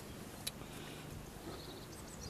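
Quiet background with a single faint click about half a second in.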